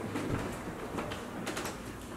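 Quiet room background with a few faint, short clicks and knocks.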